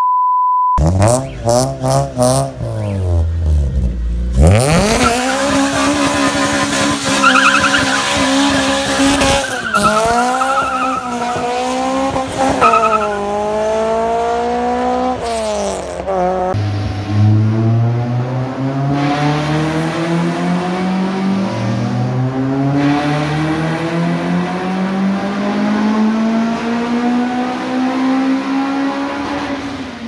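A short test-tone beep, then the 2ZZ-GE-swapped Toyota Corolla AE111's 1.8-litre four-cylinder engine revved hard, held high with tyre squeal while the car smokes its tyres. Later it accelerates through several gears, the pitch climbing and dropping back at each shift.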